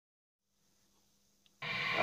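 Icom communications receiver in AM mode, at first giving only faint hiss and a low hum. About one and a half seconds in, its squelch opens on an incoming transmission with a sudden loud burst of static and carrier noise, just before a voice comes through.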